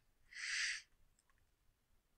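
A short breathy hiss from a person close to the microphone, about half a second long, shortly after the start, then a faint click of computer typing.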